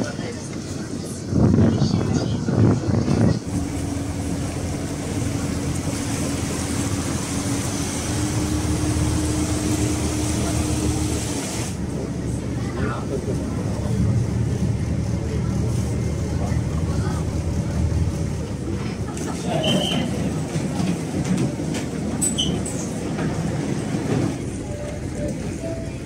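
River shuttle boat's engine running: a steady hum that breaks off suddenly about halfway through, followed by a lower, rougher rumble heard from inside the passenger cabin.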